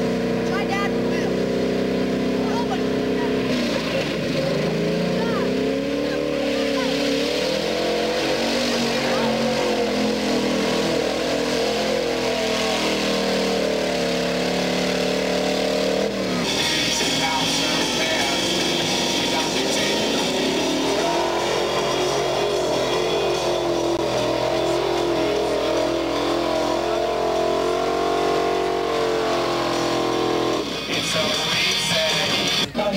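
A Jeep CJ's engine revving in deep mud, its pitch rising and falling as it is worked hard to push through the mud pit.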